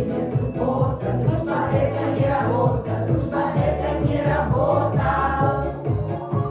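A small vocal group singing in chorus over accompaniment with a steady beat and a bass line.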